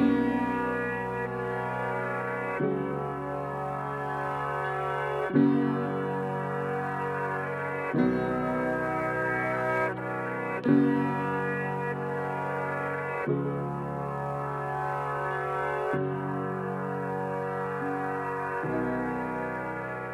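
Background music of slow, sustained chords that change about every two and a half seconds, fading out near the end.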